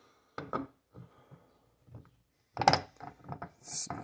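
Metal transmission parts handled on a wooden workbench: a few light clicks and knocks, with one louder thunk about two and a half seconds in.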